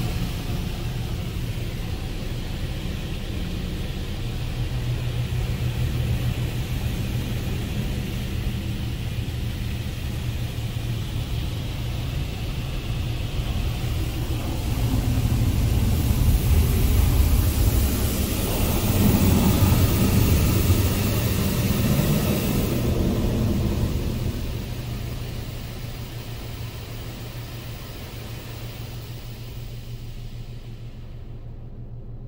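Belanger Saber SL1 touchless car wash working over the car, heard from inside the cabin: spray and water striking the body and glass over a steady low rumble. A louder hiss comes in past the middle for several seconds, and the sound fades down near the end.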